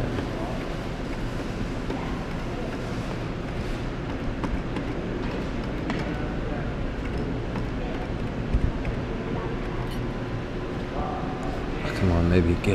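Steady arcade background din: a low machine hum with faint voices in the room, and one sharp click about two-thirds of the way through.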